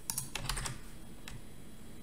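Computer keyboard keys clicking: a quick cluster of keystrokes in the first second and one more a little later.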